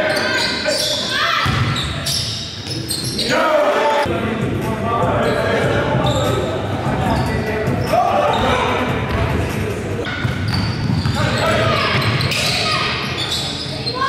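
Basketball game sounds echoing in a large gym: a ball bouncing on the hardwood floor and players' voices calling out.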